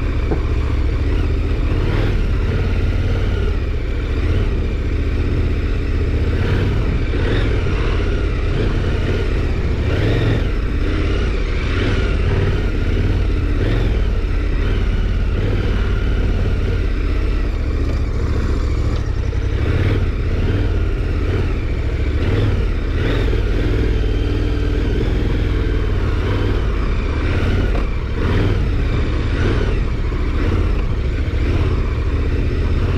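KTM 1290 Super Adventure R's V-twin engine running at changing revs, with scattered rattles and knocks from the bike over rough ground.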